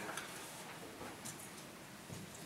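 Quiet meeting-room tone with faint, irregular soft ticks and rustles from handling at the council table.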